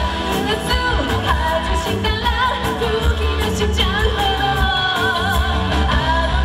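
A live band playing a pop-rock song: a woman singing lead over electric guitar, keyboard and drums, with a steady beat.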